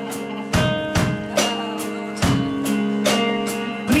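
Live rock band playing an instrumental passage: electric guitar chords ringing over a drum kit, with drum and cymbal hits about twice a second.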